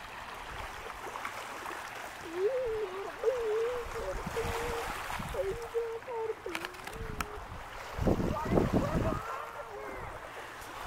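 A high voice held on one wavering note, rising and dipping in pitch for about five seconds like distant singing or humming, over a steady hiss of wind and lake water. About eight seconds in there is a brief louder rumble.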